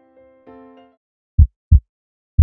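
Soft held musical notes that stop about a second in, followed by a heartbeat sound effect: two loud, deep thumps close together, a lub-dub pair.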